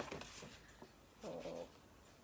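Paper gift bag rustling and clicking as it is handled and a bottle is pulled out, with a sharp click at the start. About a second and a quarter in comes a short, low voiced sound.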